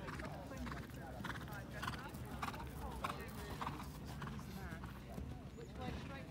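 A horse's hoofbeats on turf as it canters between jumps, repeated strikes, with voices in the background.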